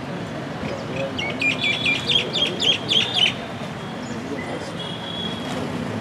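A bird calling a quick run of about eight sharp, high chirps, roughly four a second, lasting about two seconds, over a steady low outdoor murmur of background voices.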